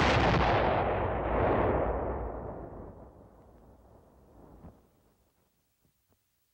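Detonation of a nitromethane tunnel-destruction charge, pumped into plastic tubing along an earthen tunnel and fired by blasting machine: a sudden heavy blast that swells again about a second and a half in, then rumbles away over several seconds as the tunnel collapses along its length.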